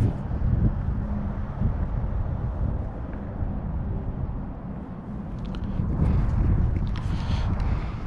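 Wind buffeting the microphone: a low rumble that rises and falls in strength, dipping about halfway through and swelling again.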